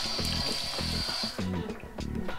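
Bathroom tap running onto a toothbrush held under it in the basin, shutting off about one and a half seconds in, over background music with a steady beat.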